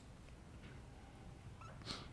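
Faint room hum, then short squeaks of a dry-erase marker on a whiteboard near the end.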